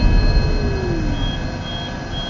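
Film trailer soundtrack: a low rumble under a steady high drone, with three short high electronic beeps about half a second apart in the second half.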